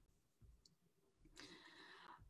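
Near silence, with a faint click a little over half a second in and a faint soft hiss near the end.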